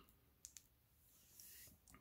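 Near silence: room tone with two faint clicks close together about half a second in, then a soft rustle.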